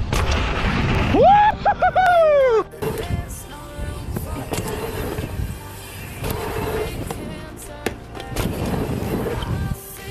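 Background music over mountain-bike riding noise. About a second in, a long pitched shout jumps up and then slides down in pitch.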